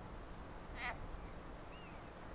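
A single short, quack-like call from a water frog about a second in. A faint bird chirp follows near the end.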